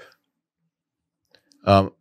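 A pause of dead silence broken only by a few faint small clicks, then a man's short "um" near the end.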